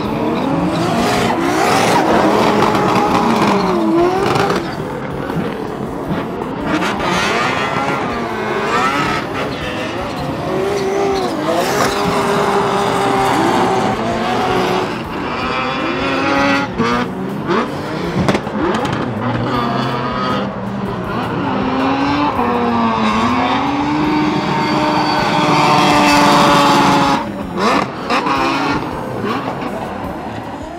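Competition drift cars running one after another at high revs, the engine note repeatedly climbing and dropping as the throttle is worked through the slide, over tyres screeching in smoke.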